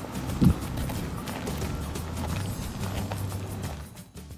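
Background music with high-heeled footsteps on a gravel path, a regular run of crunching steps. There is a short low thump about half a second in, and the sound fades near the end.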